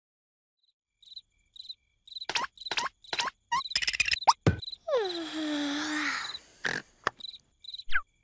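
Night-time cartoon ambience of cricket chirps, short high pulses repeating. Over it comes a run of sharp clicks and snaps, then a falling, swooping tone with a hiss about five seconds in, and a few more snaps near the end.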